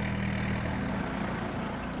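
Small tractor engine running steadily at low revs, a low hum that fades after about a second as the tractor drives off.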